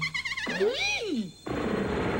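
A cartoon voice gives a wavering, rising-and-falling cry. About one and a half seconds in, a loud buzzing alarm goes off suddenly and keeps sounding: the infrared security beams have been tripped.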